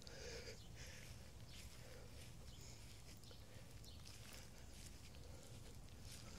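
Near silence, with faint footsteps through grass.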